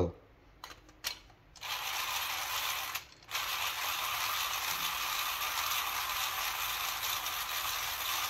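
A 3D-printed planetary-gear WDT tool is turned by hand in a portafilter, its plastic gears running steadily as the needles stir the coffee grounds. It starts about one and a half seconds in after a couple of light clicks, and pauses briefly around three seconds.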